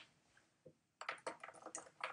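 Faint, rapid run of light clicks and taps beginning about a second in, irregular and close together.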